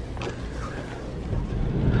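Low rumble of a moving car heard from inside the cabin, growing louder near the end.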